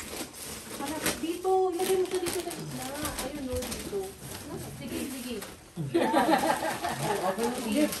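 Indistinct overlapping voices of adults and a small child, growing louder near the end, with scattered light rustling and clicking.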